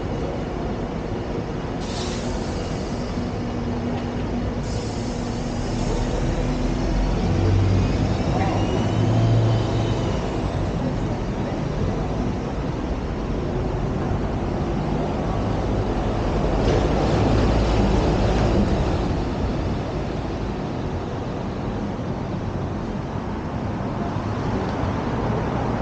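City street traffic running along the road beside the footpath, swelling louder twice as vehicles pass. Two sudden short hisses of air come about two and five seconds in.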